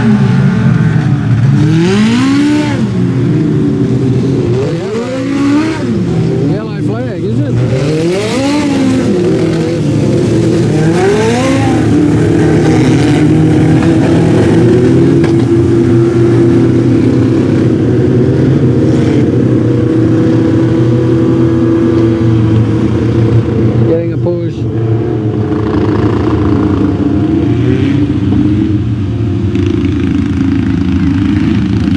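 Engines of a pack of speedway race cars on a dirt track, revving up and backing off through the turns, their pitch rising and falling every couple of seconds. From about twelve seconds in, it settles into a steadier drone of several engines running together.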